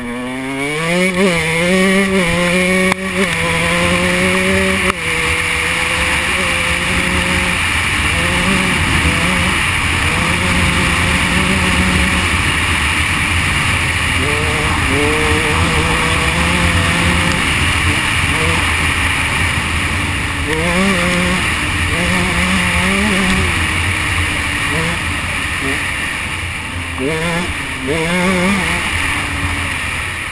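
A 125cc two-stroke enduro motorcycle engine accelerating hard at the start, rising in pitch through the gears. It then runs at a steady speed, with short rising revs each time the throttle is opened again, over steady rushing noise from riding.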